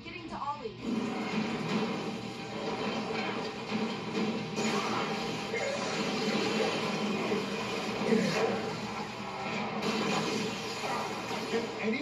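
Heavy rainstorm sound effects from a TV show, a steady wash of pouring rain that swells briefly about eight seconds in, heard through the television's speaker.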